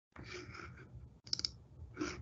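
A quick run of four or five computer-mouse clicks about a second and a half in, over faint room noise, as the screen share is being stopped.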